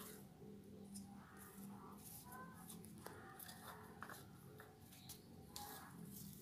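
Near silence: faint scattered scrapes and soft clicks of compost potting soil being pushed into a plastic plant pot with a small trowel and fingers, over a low steady room hum.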